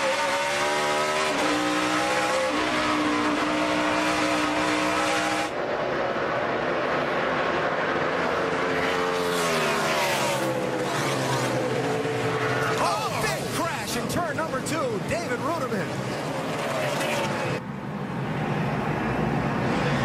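NASCAR Cup stock cars' V8 engines at racing speed: first one engine heard from onboard, its pitch climbing in steps as it shifts up through the gears, then engines falling in pitch as they slow for a corner, with engine notes rising and falling as cars brake and accelerate through the turn.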